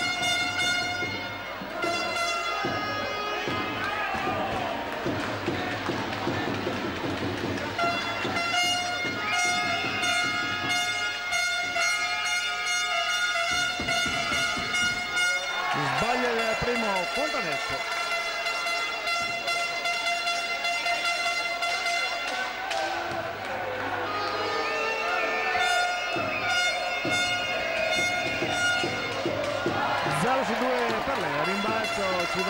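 Music over an arena's public-address system: sustained, organ-like chords that change every few seconds. Crowd voices rise over it twice, about halfway through and again near the end.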